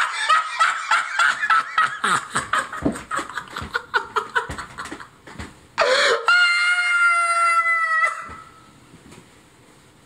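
A man laughing hard in rapid bursts, then breaking into a long, high-pitched squeal of laughter about six seconds in that lasts about two seconds before trailing off.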